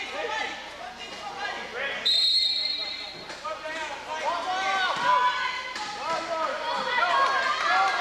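A referee's whistle blows once for about a second, a little over two seconds in. Around it, wheelchair tyres squeak on the gym floor, the ball bounces and voices carry through the hall.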